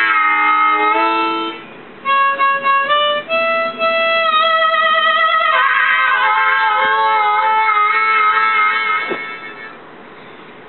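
TurboSlide harmonica, a Seydel Silver–based diatonic with stainless steel reeds, played in blow chords and single notes with the pitch bent down. A chord slides down at the start, then there are short separate notes, and the held notes drop in pitch about halfway through. A wavering chord follows and fades away just before the end.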